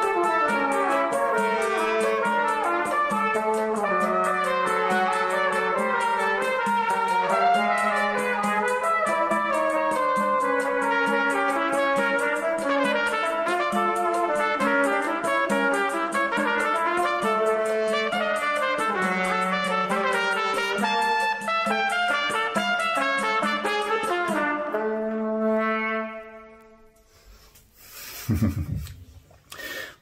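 A choro played in multi-part harmony by a trumpet ensemble with a flugelhorn, closing on a held final chord that dies away about 25 seconds in. A short noisy sound follows near the end.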